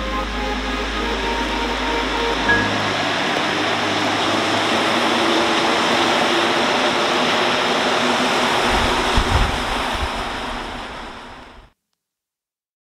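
A rubber-tyred metro train running along the platform, heard as a steady rushing noise that builds, with a few low thuds near the end before it fades and cuts off. Soft background music lies underneath in the first few seconds.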